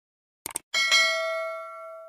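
Subscribe-animation sound effect: a quick double mouse click, then a bright bell ding that rings on several pitches and slowly fades.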